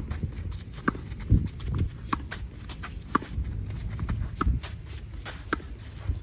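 Tennis balls struck by a racquet and bouncing on the court in a hand-fed forehand drill: a series of sharp pops, roughly one a second.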